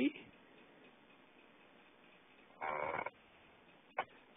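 Quiet pause with faint background hiss, broken about three seconds in by one brief half-second voiced sound from a person, and a single short click near the end.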